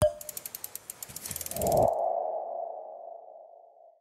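Logo-animation sound effect: a sharp hit, a rapid run of ticks, then a low thud and a ringing tone that slowly fades out.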